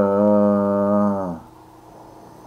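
A man's voice holding one long, steady, low-pitched vowel or hum, a drawn-out hesitation sound in mid-sentence, which falls slightly and stops about one and a half seconds in.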